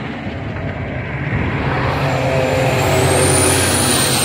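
Road traffic on an expressway: a passing vehicle's engine and tyre noise, building louder from about a second in.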